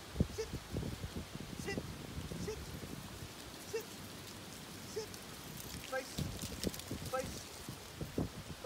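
Blue heeler puppy whimpering in short, high yips, about one a second. Under them is an irregular crunching of feet and paws shuffling on gravel.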